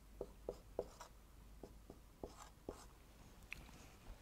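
Faint scratching strokes and light taps of a marker pen writing on a whiteboard, a dozen or so soft ticks spread unevenly through.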